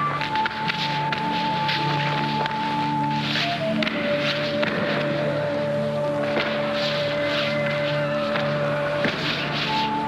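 Background music: a long held high note that drops to a lower held note about four seconds in and returns near the end, over sustained low notes.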